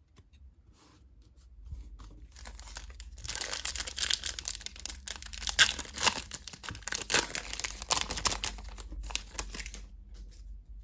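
Foil-lined trading card pack wrapper being torn open and crinkled by hand, a dense crackling that starts about two seconds in and runs until near the end.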